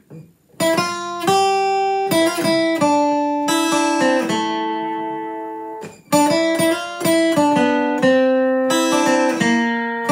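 Martin OM-28 steel-string acoustic guitar picked in a country lead lick of single notes and double stops. The first phrase starts about half a second in and is left ringing out, fading; a second phrase begins about six seconds in.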